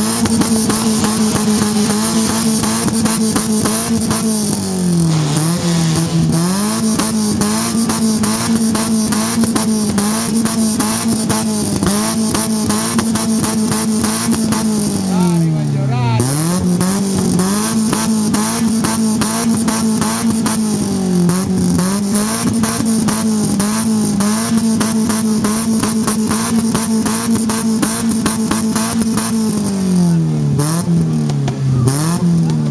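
Fiat Punto HGT's four-cylinder engine sounding through a Remus aftermarket exhaust. It is held at high revs and repeatedly lets off and climbs back, with one deeper drop and recovery about halfway through.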